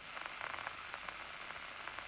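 A steady, faint hiss with a few soft crackles in roughly the first half second.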